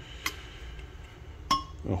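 Small metal clinks from a hex driver and stainless button-head screw against a stainless steel cover: a faint tick early and a sharper clink with a short ring about a second and a half in.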